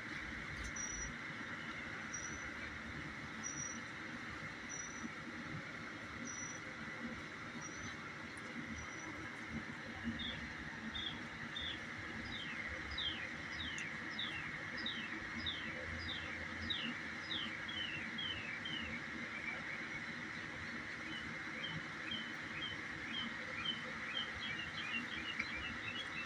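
Birds chirping: a short high chirp repeated about every second and a half, then from about ten seconds in, runs of quick descending chirps. A steady high buzz runs under them throughout.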